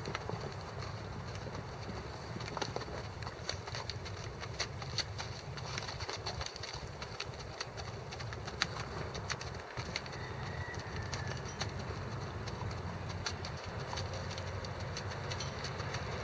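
Hoofbeats of a ridden horse moving at a steady gait over frozen ground: a run of irregular sharp clicks at several a second over a steady low hum.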